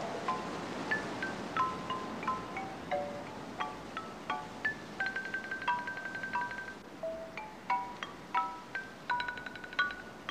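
Bell-like chime notes struck one or two at a time at scattered pitches and irregular intervals, each ringing briefly, with one longer ringing note about five seconds in.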